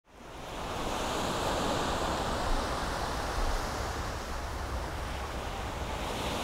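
Surf: small waves washing up on a sandy beach, a steady rushing hiss of water that fades in at the very start.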